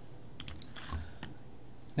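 A few faint, quick clicks from a computer mouse and keyboard, bunched in the first second or so.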